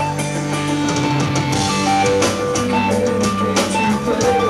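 A rock band playing live: electric guitars holding sustained chords over a drum kit, with repeated drum and cymbal hits.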